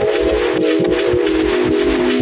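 Music, said to be tuned to A = 528 Hz: a held chord of sustained tones over a steady beat of quick ticks and low thumps. The chord steps lower at the start and again about a second and a half in.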